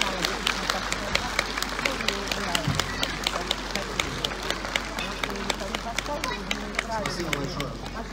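Audience applauding, with individual claps standing out and people's voices talking through it; the clapping thins out over the last couple of seconds.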